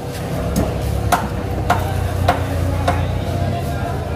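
Machete blade knocking on a wooden chopping block as a tuna loin is sliced into strips: five evenly spaced knocks, a little over half a second apart.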